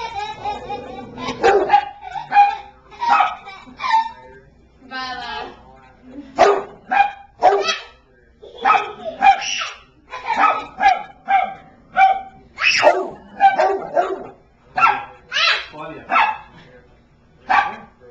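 A dog barking repeatedly in play, short barks at about two a second with a brief lull about five seconds in.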